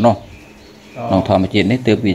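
A man's voice preaching in Khmer, with a short pause of about half a second after the first syllable before he speaks on.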